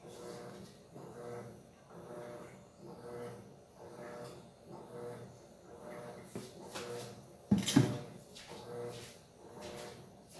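A single loud, sharp clatter about three-quarters of the way through, like a hard household object being knocked or set down, over a faint, pulsing low hum.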